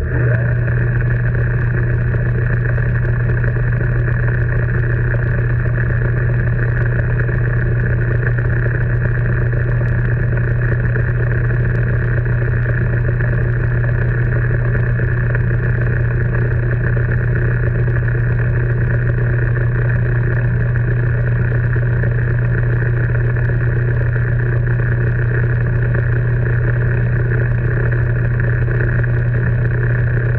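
Small metal lathe running steadily with its chuck spinning, a constant motor and gear hum with a strong low tone and no change in speed.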